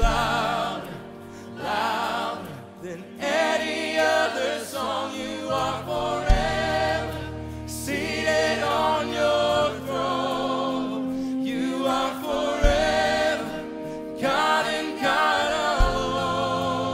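Church worship band and choir singing a contemporary worship song: lead and choir voices with vibrato over piano, electric guitars and bass, with a few low drum hits.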